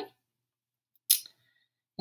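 A single short, high-pitched scratch of a pencil stroke on paper about a second in, while the numeral 5 is being written; otherwise near silence.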